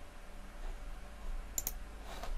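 A computer mouse clicking: one quick pair of sharp clicks about one and a half seconds in, over a faint low hum.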